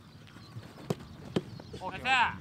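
Two sharp thuds of a football being struck, about half a second apart, during a goalkeeper shot-stopping drill. Just before the end a player starts a short shout.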